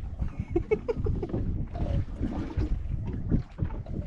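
Wind buffeting the microphone, with water lapping against the hull of a small fishing boat on open sea.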